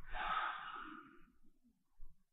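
A person's breath let out close to the microphone as a sigh, starting at once and fading away over about a second.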